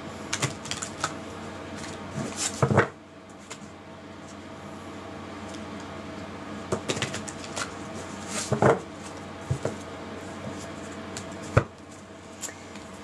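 A deck of tarot cards being shuffled overhand by hand: soft slaps and flicks of cards coming in several short bursts with pauses between them. A faint steady hum runs underneath.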